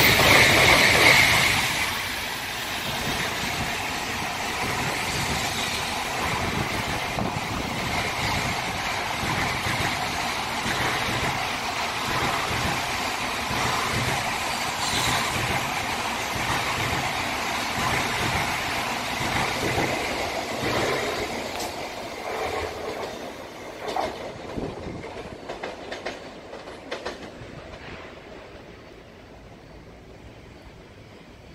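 N700A Shinkansen train running past and away along the track. It is loudest in the first second or two, then a steady rushing and rumbling of wheels on rail fades out over the last several seconds, with a few sharp clacks near the end.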